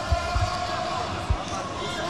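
A few dull, low thuds from two MMA fighters grappling on the cage mat, with short blows landing from top position.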